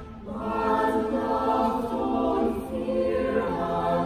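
Mixed-voice chamber choir singing unaccompanied in harmony. After a short break at the start, the voices come back in and carry on with held chords.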